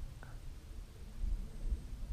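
Faint low rumble of wind on the microphone of a handheld camera outdoors, swelling a little in the second half, with one faint tick near the start.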